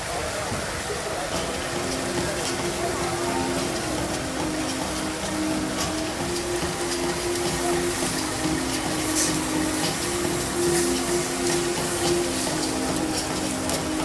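Sausages and pork sizzling on a hot flat-top griddle, a steady hiss, with metal tongs clicking now and then. Voices and broken held tones sit underneath.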